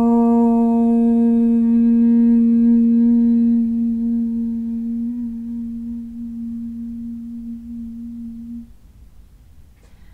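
A woman chanting one long "om" held on a single steady pitch, growing softer as it goes and stopping near the end.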